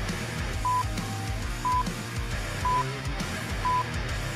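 Workout interval-timer countdown beeps: four short, identical electronic beeps, one each second, over guitar-led background music.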